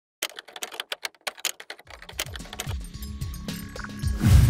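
Rapid typewriter key clacks begin a moment in, then music fades in beneath them from about halfway, with low tones sliding down again and again and growing louder.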